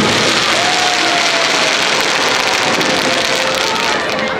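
Daytime fireworks going off overhead: a loud, dense crackling hiss that holds steady throughout, with one falling whistle about half a second in.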